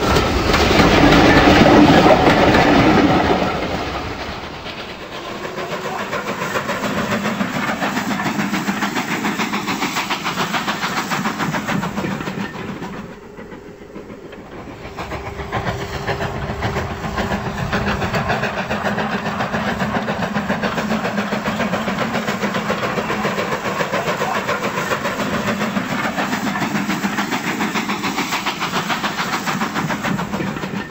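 Model railway trains running on the track: a goods train rattles past loudly over the first few seconds with a clattering of wheels over the rails and a steady hum. After a short lull about halfway, a locomotive and coaches roll along with the same steady clatter.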